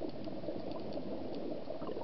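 Scuba diver's exhaled bubbles from the regulator, heard underwater: a dense, steady bubbling and gurgling with faint scattered clicks.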